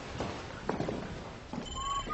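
Footsteps on a hard floor: a few irregular knocks of walking shoes. A faint high steady tone comes in near the end.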